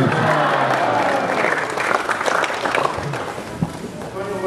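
An audience applauding, with crowd voices mixed in. The clapping dies down over the last couple of seconds.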